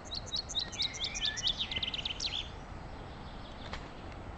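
A songbird sings one phrase of high, quick repeated notes that speed up into a trill and stop about two and a half seconds in.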